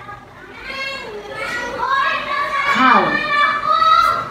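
A child's voice slowly sounding out a flash-card word, the sounds drawn out and gliding in pitch, getting louder toward the end.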